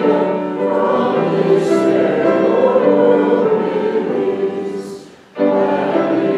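A church congregation singing a hymn together, with sustained notes. The sound drops away briefly about five seconds in, then the singing resumes.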